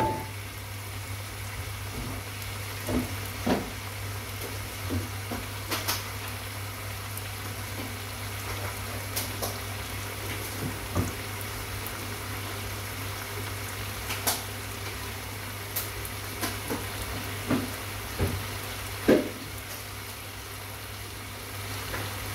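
Sliced chicken breast in oyster and dark soy sauce sizzling steadily in a granite-coated wok, with scattered sharp pops over a steady low hum.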